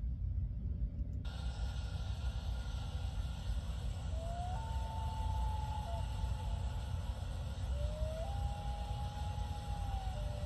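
Outdoor roadside ambience picked up by a police body-camera microphone: a steady low rumble of wind and traffic noise. Two short whistle-like tones rise and then hold level, one near the middle and one near the end.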